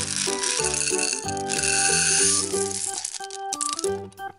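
Small green candy balls rattling as they are poured from a plastic Play-Doh can into a plastic bowl, a dense pour from about half a second in to about three seconds, over background music.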